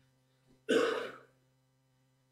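A single loud cough or throat-clear from a person close to the microphone, a sharp short burst a little past halfway.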